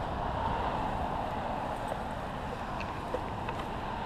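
Steady low outdoor rumble of wind and distant background noise, with a few faint light ticks near the end as wood mulch is tipped from a plastic scoop around the base of a shrub.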